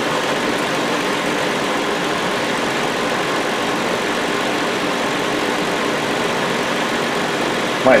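2007 Hyundai Sonata's 3.3-litre V6 idling steadily from cold, heard under the open hood.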